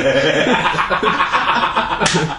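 Men laughing loudly, without a break.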